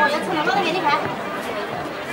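Crowd chatter: several people talking at once, with no single voice standing out.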